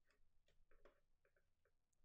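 Near silence: room tone with a few faint, short clicks scattered irregularly through the first second and a half.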